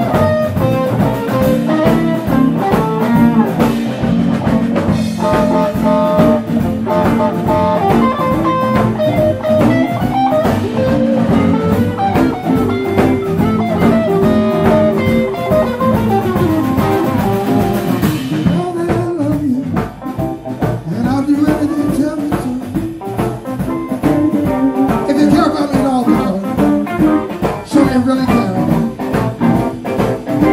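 Live blues band playing: an electric guitar lead over bass guitar and drum kit. About two-thirds of the way through, the cymbal wash stops and the band plays a little more quietly.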